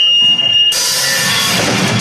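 A steady high feedback whine, then, under a second in, the band crashes in together: distorted electric guitars and a drum kit start a fast heavy song at full volume.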